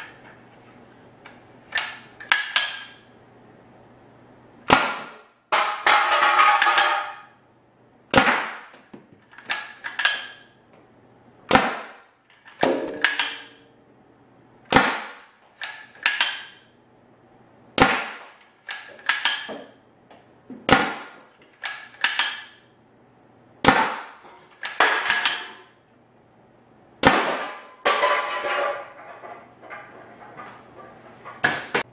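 Homemade compressed-air Nerf Rival bolt-action launcher, its homemade quick exhaust valve dumping shop air at up to 150 psi, firing eight shots about three seconds apart. Each sharp crack is followed by a brief clattering rattle.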